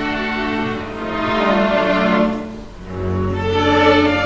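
A string orchestra of violins, cellos and double bass playing long bowed notes. The sound thins out briefly a little under three seconds in, then a low cello and double-bass note enters.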